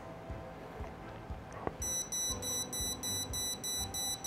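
A click, then an intruder-alarm beeper starting up: a high electronic tone beeping rapidly and evenly as the door contact triggers the alarm.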